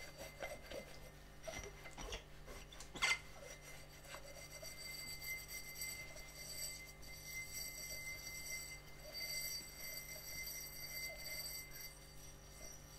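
Scrubbing the inside of a textured glass tumbler with a gloved hand: a continuous rubbing and scraping of the scrubber against the glass, with a sharp knock about three seconds in. A faint steady high tone comes in about four seconds in.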